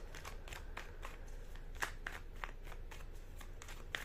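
A deck of tarot cards being shuffled by hand: a run of short, irregular card clicks and flicks, with one sharper snap a little before two seconds in.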